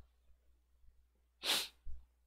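A single short, sharp breath of air from a man close to the microphone, lasting about a third of a second, about a second and a half in. A fainter small sound follows just before the end; otherwise near silence.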